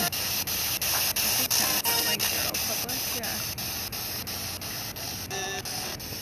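Spirit box sweeping through radio stations: a steady hiss of static chopped by about four clicks a second as it jumps between frequencies, with brief faint fragments of radio voices.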